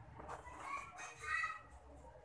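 A short animal call in the background, loudest about a second and a half in, over a faint low hum.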